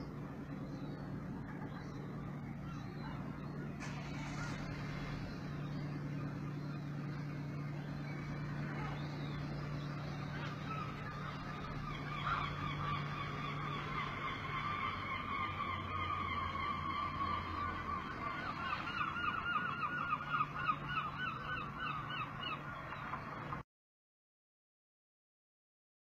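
Birds calling in a series of repeated cries, starting about halfway through and growing faster and louder near the end, over a steady low hum. The sound cuts off suddenly just before the end.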